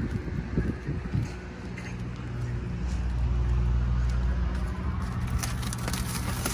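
A steady low motor hum, louder through the middle, with a few knocks in the first second. Near the end, plastic stretch wrap crinkles as it is pulled back by hand.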